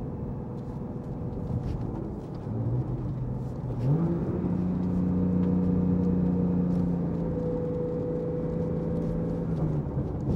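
Porsche 991.2 Carrera T's twin-turbo flat-six heard from inside the cabin while driving. Engine pitch climbs about three seconds in as the car accelerates, holds steady for several seconds, then drops away near the end.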